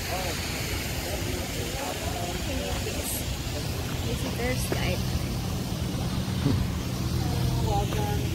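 Outdoor background: a steady low hum, stronger from about halfway, under faint distant voices.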